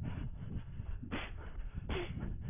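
A runner's hard breathing, two sharp exhalations a little under a second apart, over a steady low rumble of running movement on a head-mounted action camera.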